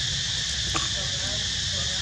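Steady insect chorus, a continuous high buzz, over a low rumble, with one sharp click about three-quarters of a second in.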